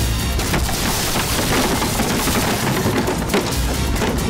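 Film fight sound effects: a dense crash of splintering wood and breaking debris, with a sharp crack near the end, over dramatic background music.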